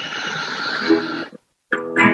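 A man singing a held note with guitar, heard through a video call. Past the middle the sound cuts out completely for a moment, then guitar strumming and singing come back just before the end.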